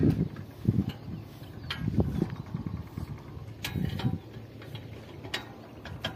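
Scattered sharp metallic clicks and taps from a hand tool working on the steel frame of a motorcycle-drawn cultivator (sanedi), with dull low bumps between them; the engine is not running.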